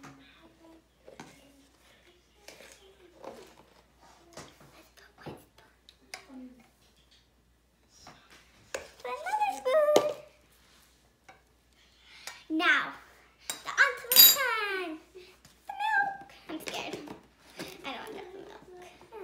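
Metal spoon clinking and scraping as cocoa powder is scooped from a tin and tapped into a stainless steel jug, in scattered light taps. From about nine seconds in, a young girl's wordless voice slides up and down in pitch, loudest about fourteen seconds in.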